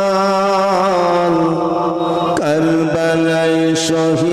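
A man's voice chanting a slow melodic line in long held notes, sliding from one pitch to the next about a second in and again near the middle.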